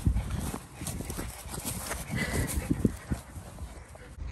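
Running feet and dogs' paws thudding irregularly on wet grass close to a moving handheld microphone, with one sharper knock about three seconds in.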